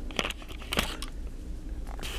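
Plastic wrapping of toilet-paper packs crinkling in two brief rustles, one just after the start and one just before the middle.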